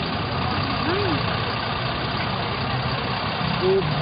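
A steady low engine rumble, like idling traffic, with a brief fragment of a man's voice about a second in.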